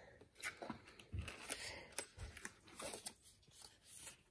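Cardboard advent calendars and paper being handled and shifted about in a wooden drawer: scattered rustles and light clicks, with a few soft bumps.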